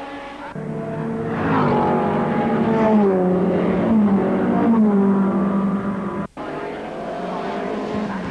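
Racing saloon car engine at speed, its note falling several times as the car slows, with a sudden brief break about six seconds in before a steadier engine note resumes.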